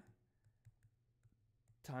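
A few faint, sharp clicks of a stylus tip tapping on a tablet screen during handwriting, spaced irregularly over the first second and a half.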